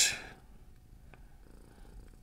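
Domestic tabby cat purring faintly, a low steady rumble.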